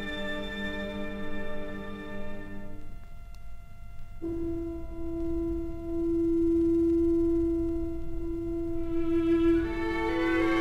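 Orchestral recording played from a 1961 45 rpm vinyl EP: a held chord ends one piece about three seconds in and a gap of about a second follows. The next piece then opens on one long sustained low string note, with more strings entering near the end.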